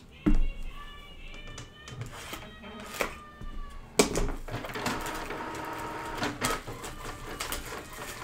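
Plastic shrink wrap crinkling and tearing as it is peeled off a cardboard retail box of trading cards, in quick irregular crackles. Music with held tones plays underneath.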